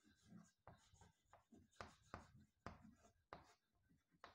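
Chalk writing on a blackboard, faint: a quick run of short scratching strokes and taps as letters are written, the sharpest coming in the second half.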